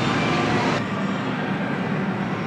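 Steady background din of a large indoor arcade hall: an even wash of noise with faint steady machine tones and no clear single source. The high hiss drops away a little under a second in.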